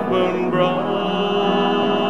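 Church choir singing a hymn with piano accompaniment, the voices holding a long sustained chord.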